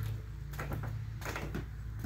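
Soft footsteps and a few faint knocks, irregular and light, over a steady low hum.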